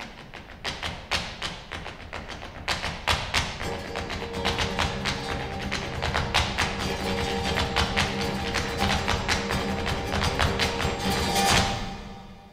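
Flamenco zapateado: the dancer's shoes strike the stage in rapid rhythmic stamps and taps that build in speed and loudness. A low steady drone joins about three and a half seconds in. The footwork ends with a final loud stamp just before the end, then the sound cuts off.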